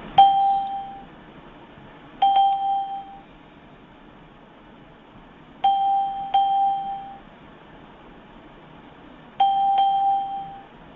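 A clear bell-like chime struck six times on the same single note, in singles and close pairs a few seconds apart, each note ringing out and dying away within about a second.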